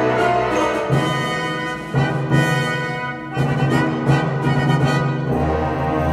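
Full symphony orchestra playing live: sustained chords that shift every second or so, with a deep low note coming in about five seconds in.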